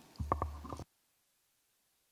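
A short low sound with a few faint clicks on a conference table microphone, which then cuts off suddenly to dead silence under a second in as the microphone is switched off.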